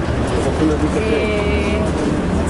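People's voices over a low, steady rumble. About halfway through, one voice holds a long drawn-out note.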